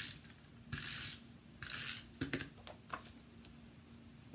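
Adhesive tape runner drawn across cardstock in three short rasping strokes, laying glue on the card's inside piece, followed by a few light knocks as the runner is put down and the paper handled.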